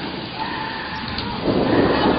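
Heavy rain falling in a thunderstorm, with thunder rumbling and swelling louder about one and a half seconds in.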